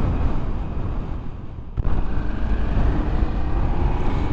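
Riding noise from a Ducati Multistrada V4S at road speed: wind noise on the microphone over the bike's V4 engine running. The sound dips for a moment just before the middle, then comes back suddenly louder.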